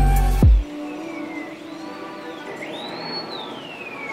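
Background music with a heavy bass beat stops under a second in, leaving a fire siren wailing, its pitch sweeping slowly down and up several times.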